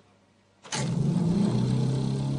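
Near silence, then about two-thirds of a second in, the prototype magnetic motor-generator comes in suddenly and runs with a steady low hum over a whirring rush.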